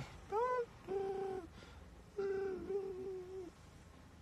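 A man humming wordlessly with closed lips: a short rising "hmm", then two held notes, the last one longest.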